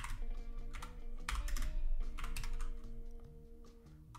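Typing on a computer keyboard: an irregular run of keystroke clicks in quick clusters, thinning out near the end.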